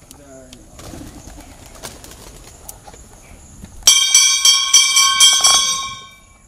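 Hanging temple bell rung rapidly, about four or five strikes a second for roughly two seconds, starting about two-thirds of the way in. The clear ringing dies away near the end. It is the loudest sound here.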